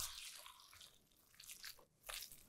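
Faint wet squishing of a silicone spatula folding a mayonnaise-and-crab mixture in a glass bowl, mostly in the first half-second, with two soft touches near the end; otherwise near silence.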